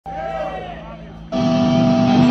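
A voice over the PA, then about a second and a half in a heavy metal band's amplified, distorted electric guitars come in abruptly with a loud sustained chord.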